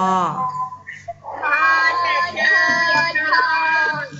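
Several young children chanting a Thai consonant name together in a drawn-out sing-song, their voices overlapping slightly out of step, heard through video-call audio. A long held syllable fades just after the start, and the group chant comes in about a second and a half in.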